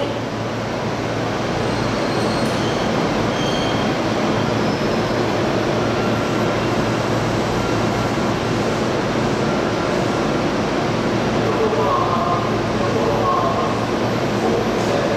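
Steady rumble and running noise of a Sotetsu electric train at Yokohama Station, with a faint high wheel squeal in the last few seconds.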